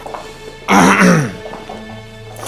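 A man clears his throat once, a short vocal sound falling in pitch, about a second in, over a steady low background music score.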